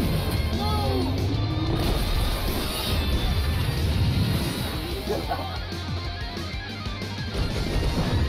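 Soundtrack of an animated action trailer: music with crashing impacts and a blast from a sword fight against a giant robot.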